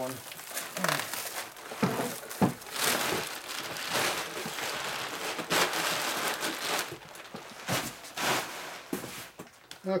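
Plastic bubble wrap and stretch-wrap film crinkling and rustling in irregular bursts as they are pulled and handled.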